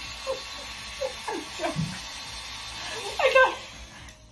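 Mini handheld hair dryer running with a steady whirring hiss that stops right at the end. Short bursts of laughter sound over it, the loudest about three seconds in.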